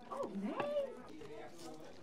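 Speech only: a short spoken "oh", then a quieter second of low room noise.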